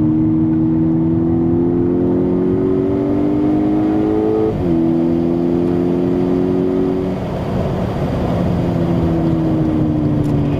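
Volkswagen Golf GTI Edition 35's turbocharged four-cylinder engine heard from inside the cabin under hard acceleration: it climbs steadily in pitch, drops sharply at an upshift about halfway through, holds, then eases off about seven seconds in.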